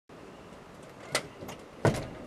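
A steady outdoor background hiss with three sharp knocks, the last and loudest near the end.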